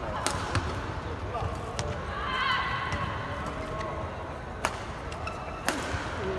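Badminton rackets striking a shuttlecock in a rally, several sharp cracks spaced irregularly about one to three seconds apart, over a murmur of spectators' voices.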